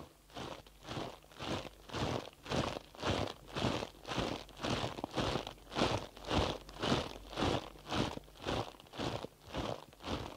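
Marching footsteps crunching through snow, a steady tread of about two steps a second.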